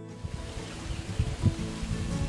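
The background acoustic music drops out for a moment, leaving a steady outdoor hiss with irregular low rumbles of wind and lapping water. The music's notes return near the end.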